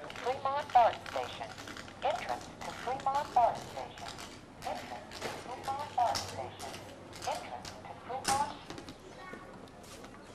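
Talking Signs handheld infrared receiver playing a recorded spoken message through its small speaker in short repeated phrases as it picks up the sign's beam, with sharp taps of a long white cane, the loudest tap about eight seconds in.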